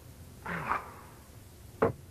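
A softer, noisy sound about half a second in, then one sharp knock or thud near the end.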